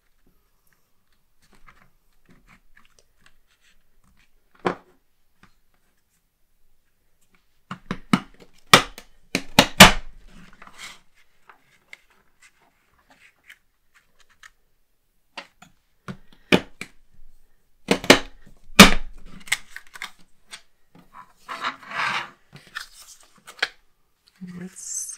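Fiskars border punch pressed down through the edge of a cardstock sheet: two bursts of sharp clacks and crunches several seconds apart, then paper rustling near the end as the punched card is handled.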